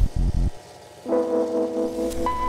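Sound-design stinger over an animated title card: a few deep bass hits at the start, then a sustained gong-like chord of steady tones that swells in about a second in and holds.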